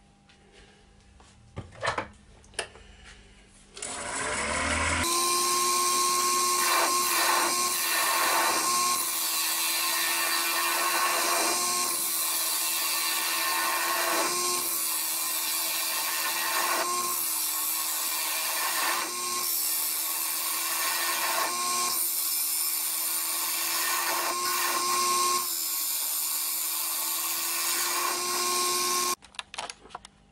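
Wood lathe running while a carbide-tipped scraper hollows the face of an oak platter: a steady motor hum under the continuous hiss of the cutting. It starts about five seconds in, after a few faint clicks, and stops abruptly near the end.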